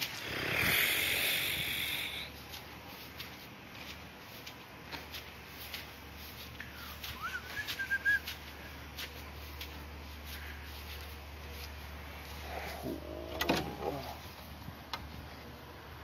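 Outdoor backyard ambience with a burst of hiss in the first two seconds and scattered small clicks of phone handling. A brief bird chirp comes about halfway through, and a short lower call follows near the end.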